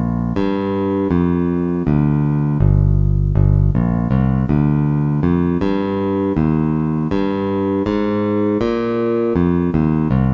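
A bass line played back at half speed by a score program's sampled bass, a single line of separate pitched notes at about two to three a second. One note is held longer about three seconds in.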